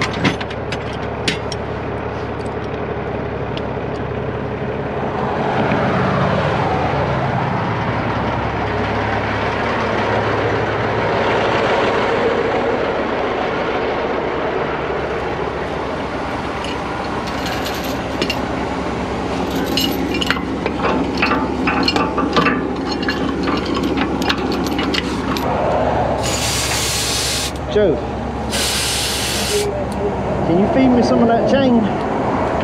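A vehicle engine idling steadily, with a vehicle passing on the road about five seconds in and scattered light clinks. Near the end come two short blasts of hissing compressed air from an air hose.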